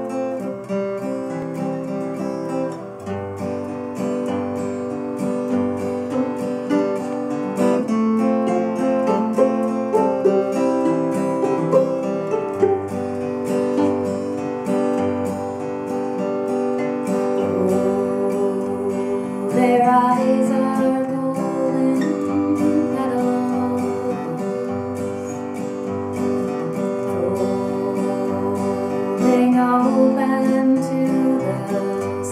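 Fiddle and acoustic guitar playing folk music: long held fiddle notes over a strummed guitar with repeating low bass notes.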